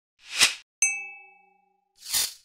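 Audio logo sting: a short whoosh swelling and falling away, then a bell-like ding that rings out and fades over nearly a second.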